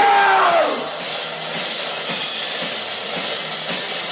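Live band playing loud: a sung note slides down and fades out in the first second, then the drum kit with crashing cymbals and electric guitar carry on.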